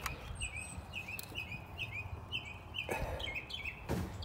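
A small bird chirping: short, hooked chirps repeated about two or three times a second over a low steady hum, with a brief knock about three seconds in.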